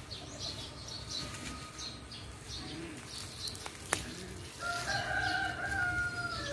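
A rooster crows once near the end, one long call of about two seconds that falls slightly as it ends. Before it, small birds chirp in short high notes over and over, and there is a single sharp click.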